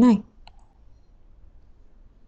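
A single computer mouse click about half a second in, the dropdown menu being clicked shut, followed by faint room tone.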